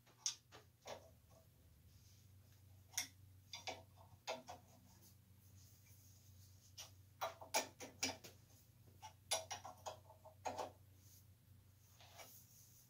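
Irregular light clicks and taps of metal fittings and glass as a crystal chandelier arm is handled at a workbench, over a faint steady low hum.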